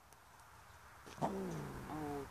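Two short animal calls, each starting high and falling in pitch: the first about a second in, the second near the end.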